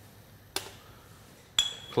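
Glass jam jars set down on an aluminium tray: a light tap about half a second in, then a sharper clink with a brief ringing near the end.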